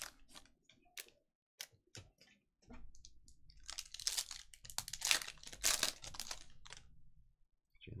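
A few light clicks in the first seconds, then the wrapper of a trading-card pack crinkling and tearing for about three seconds as it is ripped open by hand.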